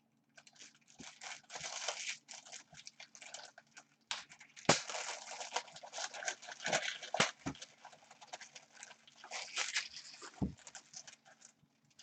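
Plastic shrink-wrap being torn and crinkled off a trading card box, an irregular crackling rustle broken by a few sharp clicks.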